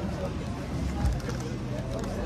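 Background voices over steady street noise with a low rumble; no single event stands out.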